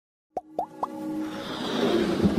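Three quick pops rising in pitch, about a quarter second apart, then a swelling whoosh that builds up: the sound effects of an animated logo intro.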